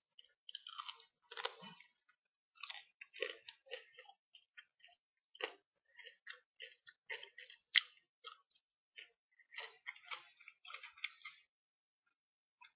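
A person chewing crunchy food close to the microphone: irregular crisp crackles and crunches several times a second, in clusters, with one sharper crunch past the middle.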